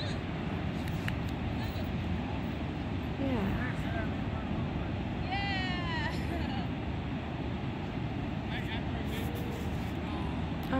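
Steady rush of ocean surf and wind on an open beach, with faint, distant voices briefly calling out twice near the middle.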